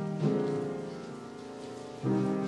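Piano music: a chord struck just after the start rings on and slowly fades.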